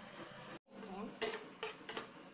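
A metal spatula clinks against a frying pan three times while stirring minced garlic frying in oil.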